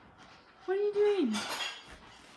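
A dog's drawn-out whine: one held note that slides down at the end, followed by a short breathy rush of noise.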